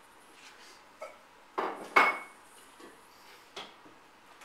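A few clattering knocks of metal dog food bowls being handled while breakfast is readied, the loudest about two seconds in with a short metallic ring.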